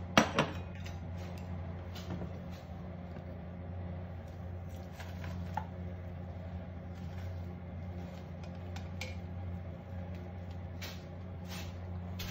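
A ceramic bowl set down on a glass cooktop, with two sharp knocks right at the start. Then scattered light clinks and knocks as ramen is tipped from a stainless saucepan into the bowl with chopsticks, over a steady low hum.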